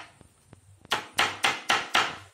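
Hand hammer striking a block held against a German silver sheet: five sharp knocks in quick succession, about four a second, starting about a second in.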